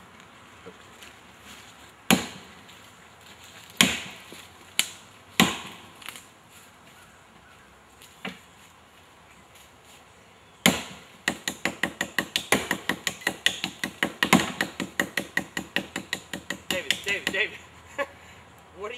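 Axe chopping into a fallen log: a few single blows a second or two apart, then from about eleven seconds in a quick, even run of about three blows a second.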